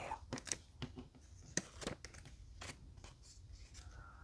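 Faint rustling and a scattering of short, crisp ticks from a square of colored origami paper being folded and creased by hand against a tabletop.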